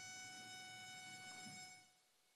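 Near silence: faint room tone with a thin steady electronic whine, dropping to dead silence just before the end.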